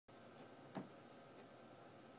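Near silence: room tone with a faint steady hiss, broken by one brief click a little under a second in.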